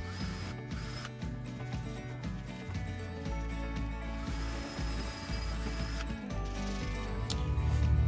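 Power drill with a countersink bit running in two short bursts, one at the very start and one of about two seconds from around four seconds in, over background music.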